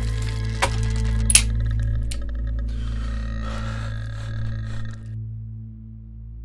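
Dark ambient drone score, a deep steady rumble, overlaid with crackling clicks and one sharp crack about a second and a half in. Near 5 s everything but the low drone cuts off.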